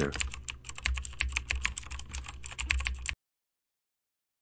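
Computer keyboard typing: a quick run of keystrokes as a terminal command is typed and entered. It stops abruptly a little after three seconds in.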